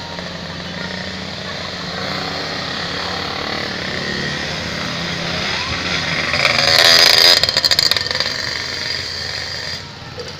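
Cars and motorcycles driving slowly up a steep hill, their engines making a steady hum; one vehicle passes close about seven seconds in, the loudest moment, before the sound eases off again.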